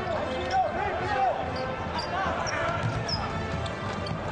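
Indoor futsal match in play: steady arena crowd noise, with short rising-and-falling squeals (players' shoes or calls) and ball and foot sounds on the court floor.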